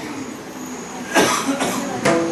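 A person coughs once, about a second in.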